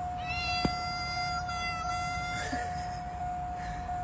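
Domestic cat giving one long, even-pitched meow lasting about two seconds, with a faint steady high tone underneath.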